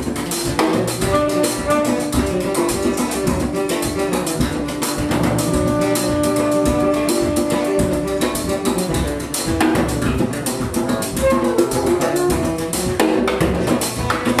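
Live improvised band music: guitar and bass over a busy drum kit and percussion, with one long held note running through the middle.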